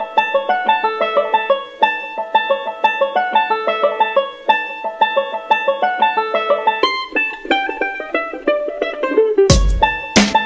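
Background music: a quick plucked-string tune, with drum hits coming in near the end.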